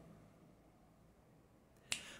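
Near silence of room tone, broken near the end by one short, sharp intake of breath.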